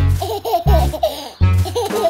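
A cartoon baby giggling in short, quick bursts over children's music with a bass beat.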